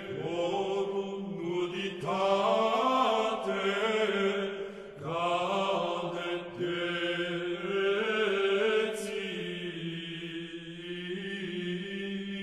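An early-music vocal ensemble chanting a medieval Latin introit in plainchant style over a steady low drone. The voices sing in held phrases, with new phrases entering about two and five seconds in.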